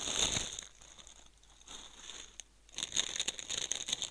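Plastic crisp packaging crinkling as a single packet is pulled out of a multipack bag. It rustles for the first half second, goes quieter, then rustles again from about three seconds in.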